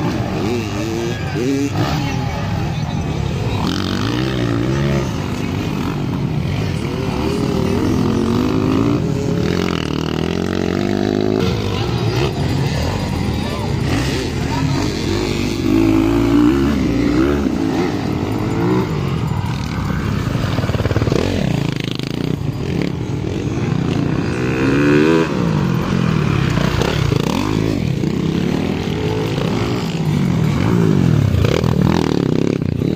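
Motocross dirt bike engines revving, their pitch rising and falling repeatedly as they race around the track, with voices mixed in.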